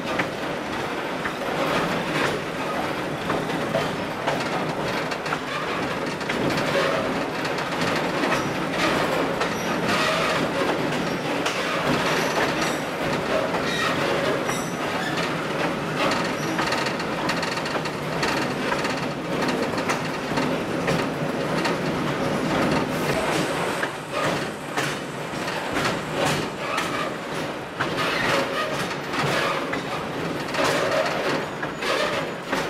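Railway car rolling along the track, its wheels clicking and rattling over the rail joints over a steady running rumble, with a few faint high wheel squeals around the middle.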